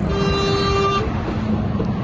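A vehicle horn sounds one steady blast of about a second, followed by the low rumble of engine and road noise on the motorway.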